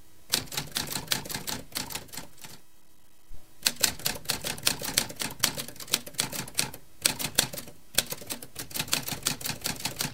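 Typewriter key clicks in quick runs, about eight to ten strikes a second, stopping twice for about a second.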